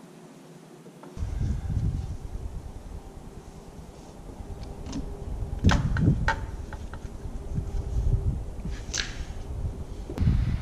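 Uneven low rumble of wind on the microphone, starting about a second in, with a few sharp metallic clicks around the middle and near the end from tools being worked on the underside of the Rotax 912 iS engine.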